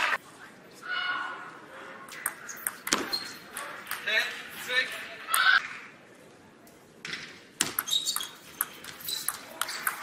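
Table tennis doubles play: sharp clicks of the ball off paddles and the table, with a run of them in a rally near the end. Voices and shouts in a large hall come in between.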